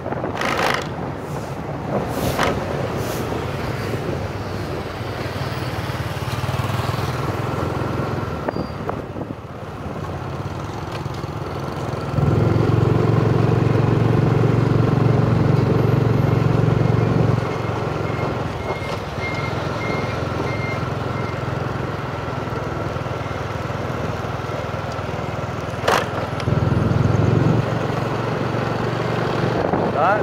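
Wind rumbling on the microphone of a camera carried on a motorbike riding fast, over the bike's engine and road noise. The rumble swells for about five seconds from twelve seconds in, and briefly again near the end.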